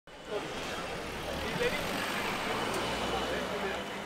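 Road traffic running, with a low engine rumble that falls away near the end, under the overlapping chatter of a crowd of people talking.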